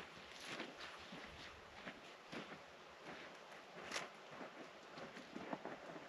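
Faint, irregular footsteps of a person walking over rocky, gravelly desert ground.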